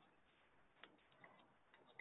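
Near silence: room tone, with two faint ticks about a second in.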